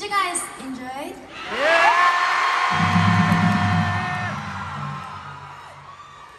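A woman's voice through the arena PA says a few words, then sings one long note that slides up and holds for about three seconds. A low chord comes in underneath partway through and fades out after the note ends.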